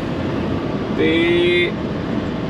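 Steady road and engine noise inside a semi-truck's cab while it is driving.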